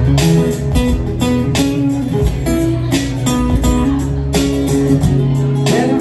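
Acoustic guitar strummed in a steady rhythm over sustained low bass notes: an instrumental passage of a live song, with no singing.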